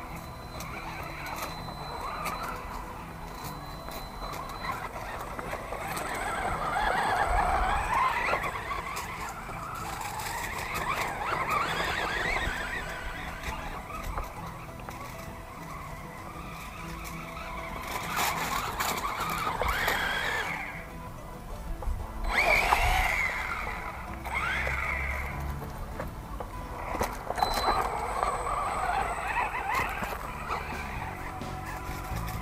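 Axial Exo Terra RC buggy's 3200kv brushless motor on a 3S battery, whining as it speeds up and slows down again and again while the buggy drives over loose dirt, with music underneath.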